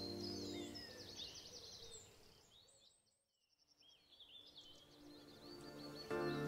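Background music with birdsong chirping over it. The music fades away over the first couple of seconds and everything dips to near silence about halfway through, then the birdsong fades back in.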